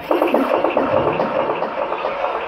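Electronic bass music from a live DJ set in a breakdown: the kick and bass drop out suddenly and a dense, fast-fluttering noise effect fills the mid and high range.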